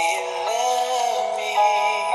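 A man singing over musical backing: the voice holds and bends long notes above steady sustained chords.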